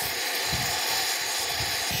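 Oxy-fuel torch with a brazing tip burning with a steady hiss, heating a steel steam-pipe flange up toward a cherry-red brazing heat. A low rumble joins in about half a second in.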